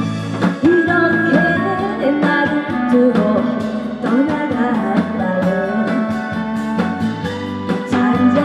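A woman singing into a microphone over an amplified backing track with a steady beat.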